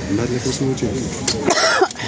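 Low talking, then a person coughs sharply about one and a half seconds in: an allergic cough that the person puts down to dust from the fabrics.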